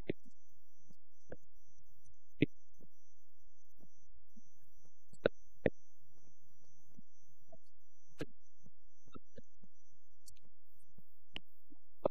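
A steady low electrical hum with a handful of separate sharp clicks spread through it, which fit computer mouse clicks. The loudest click is about two and a half seconds in, and two more come close together just past the middle.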